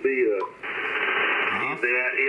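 Shortwave band noise from an Icom IC-7300 transceiver receiving single sideband on 40 metres: a steady hiss of static, cut off above about 3 kHz by the receive filter. It fills a pause of a little over a second between words from the received station.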